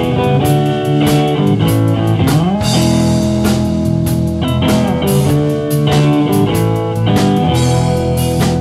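Live blues band playing an instrumental passage: electric guitars over a drum kit, with no vocals. About two and a half seconds in, one note glides upward in pitch.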